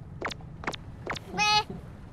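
Animated cartoon soundtrack: four sharp, short sound effects about half a second apart, then a brief high-pitched cry from a cartoon character's voice about one and a half seconds in, the loudest sound.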